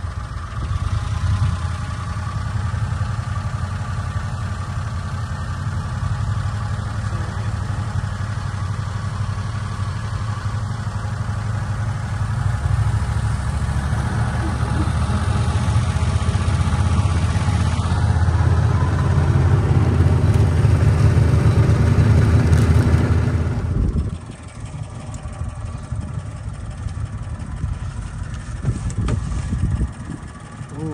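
Golf cart driving along with a steady low rumble that grows louder toward the middle, then drops off suddenly about 24 seconds in as the cart stops.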